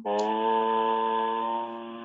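A man's voice holding one long, steady chanted tone on a single pitch, a drawn-out meditation chant, growing a little quieter near the end.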